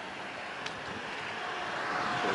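Road traffic noise from cars on the adjacent road, steady and growing louder toward the end as a car approaches, with one faint click about two-thirds of a second in.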